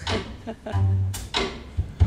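Live jazz trio of keyboard, double bass and drums playing a sparse, cantering rhythm, with low bass notes repeating and a sharp drum hit about a second in.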